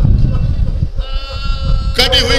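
A drawn-out, wavering human cry, held for about the last second, over a low rumble of the gathering: a mourner's or the reciter's weeping wail during the mourning recital.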